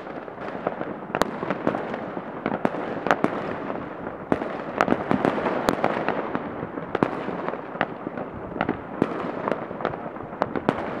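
Many New Year's fireworks and firecrackers going off across a town at once. Irregular sharp bangs come several times a second over a continuous crackling.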